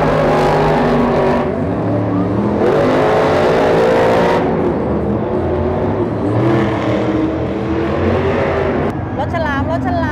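Monster truck engines, supercharged V8s, running hard at high revs as two trucks race around a dirt course, with a rising rev a few seconds in. A voice comes in briefly near the end.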